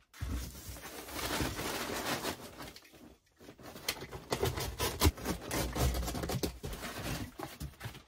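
Packing void fill rustling and crinkling as hands press it down inside a cardboard box, with a brief pause about three seconds in.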